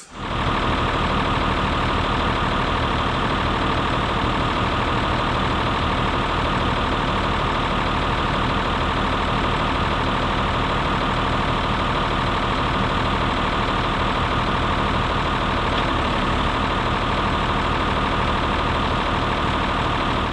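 Diesel farm machine engine idling steadily and evenly, with no revving.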